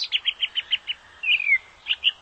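Songbird singing: a fast run of short high chirps, about ten a second, for the first second, then a single falling whistled note and two more chirps near the end.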